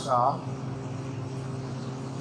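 A brief spoken syllable, then a steady low mechanical hum with a faint hiss that holds level without change.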